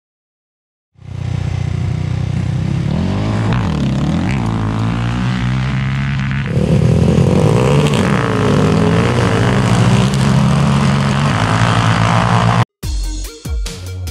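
Drag-racing quad engines at full throttle on a sand drag strip, their pitch climbing through the gears. The sound cuts suddenly about six and a half seconds in to another equally loud run. Near the end it gives way to music with a steady beat.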